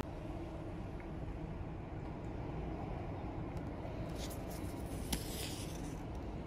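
Quiet, steady low rumble of background noise, with a few faint clicks scattered through it.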